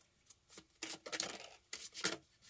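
Tarot cards being handled: a few short swishes as cards slide out of the deck against one another and are laid on a wooden table.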